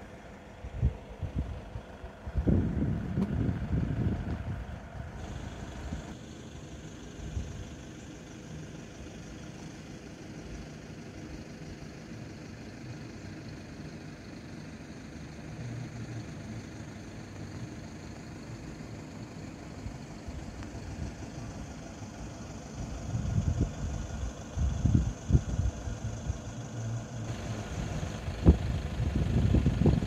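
Low rumble of wind buffeting a phone microphone, coming in irregular gusts, strongest a couple of seconds in and again over the last several seconds.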